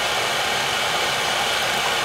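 Gas torch flame burning with a steady, even rushing hiss.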